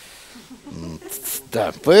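A man's short, low chuckle followed by a breath, then he starts speaking again near the end.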